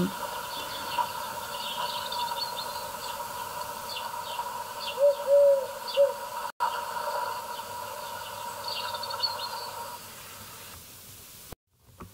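Wild birds chirping and calling in a garden, many short high notes, with a few louder low drawn-out calls about five to six seconds in. The birdsong fades out after about ten seconds.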